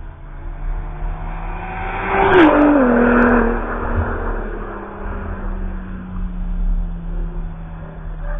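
A car on a race track passes close by at speed: its engine note builds, is loudest about two and a half seconds in, then drops sharply in pitch as it goes by and fades away.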